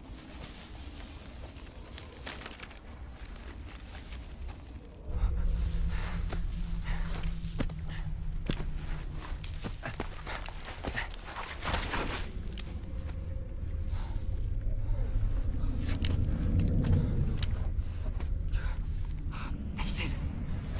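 Footsteps on a forest floor with scattered snaps and crackles of twigs and leaves. A low droning rumble comes in suddenly about five seconds in and swells near the end.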